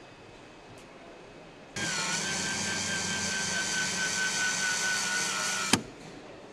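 Handheld power tool motor running at a steady whine for about four seconds, starting suddenly about two seconds in and cutting off with a click near the end.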